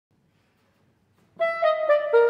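Soprano saxophone entering about a second and a half in after near silence, playing a short phrase of notes that step downward.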